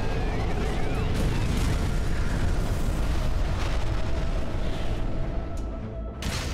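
Sci-fi energy blast and explosion sound effects: a loud, continuous heavy rumble, with swooping, crossing whistle-like tones in the first second or so.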